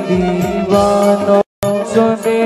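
Devotional bhajan singing: a voice holding a melodic line over a steady drone and drum strokes. The sound cuts out for a split second about three-quarters of the way through.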